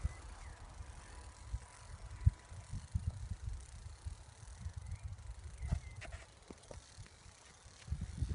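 Wind buffeting a phone microphone, an irregular low rumble with scattered handling knocks and a few sharp clicks about six seconds in.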